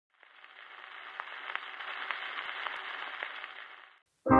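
Surface noise of a 78 rpm gramophone record in the lead-in groove before the music: a steady hiss with scattered sharp clicks. It fades in and fades out again just before the music begins.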